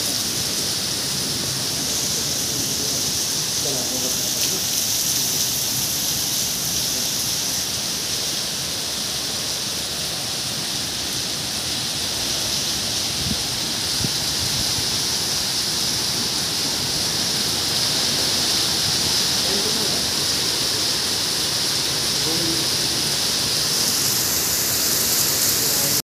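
Heavy rain pouring down steadily on a paved road and trees, an even hiss that gets a little heavier in the last few seconds.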